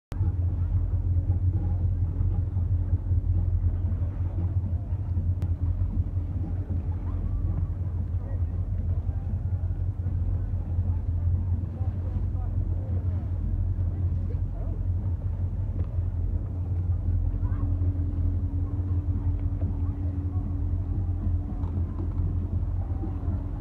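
A motorboat engine running steadily at low speed, a continuous low hum with a steady higher drone over it.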